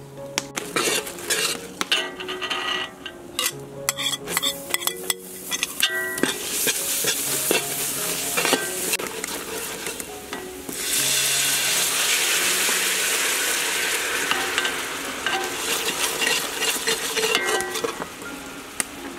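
A spoon stirs and scrapes against a pot, with many sharp clicks in the first few seconds. Then a thick sauce sizzles and bubbles in a hot pan as it is stirred, louder from about eleven seconds in.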